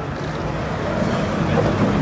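City street traffic: cars passing with a steady low engine hum.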